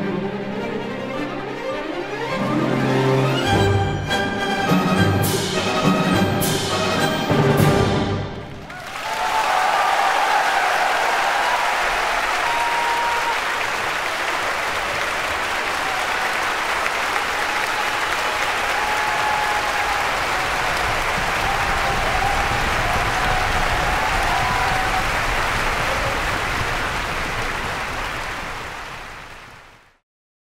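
Full symphony orchestra, led by the strings, playing a loud closing passage with percussion strikes, ending on a final chord about eight seconds in. A concert-hall audience then breaks into steady applause with some cheering, which fades out near the end.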